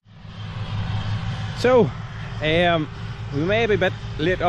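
A steady low rumble outdoors, with a man's voice starting to talk about a second and a half in.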